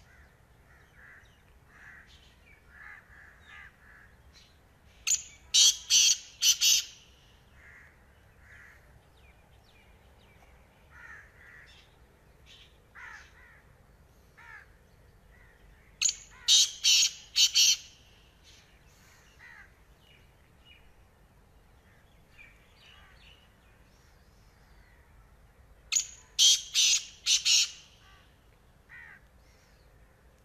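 Black francolin calling: three loud phrases of four or five quick notes each, about ten seconds apart. Faint chirps of other birds come in between.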